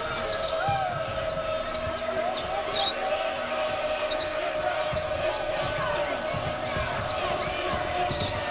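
Basketball arena crowd noise with a steady droning tone running under it, a basketball being dribbled on the hardwood, and short high sneaker squeaks on the court.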